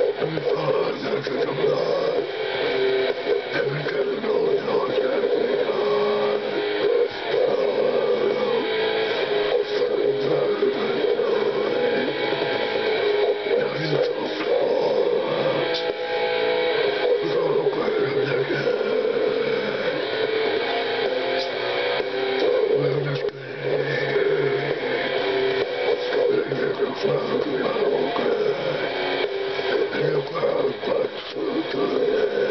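Death metal song with distorted guitars played back through a speaker, with a man growling the vocals along with it.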